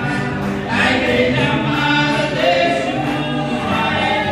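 A gospel hymn in Portuguese, sung over piano accordion and electric guitar accompaniment.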